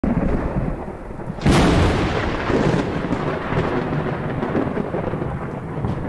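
Thunder sound effect: a loud crack about one and a half seconds in, then a long rolling rumble over a steady rain-like hiss.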